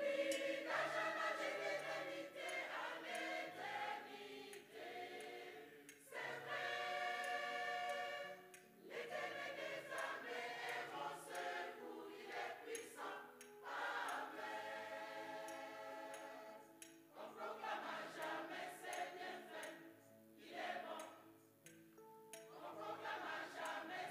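Mixed choir of men's and women's voices singing a French worship song, in phrases a few seconds long with short breaks between them.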